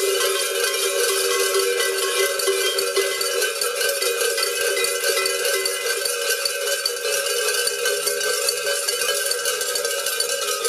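Many cowbells worn by carnival masqueraders clanging together densely and without pause, a steady loud jangle of overlapping ringing tones.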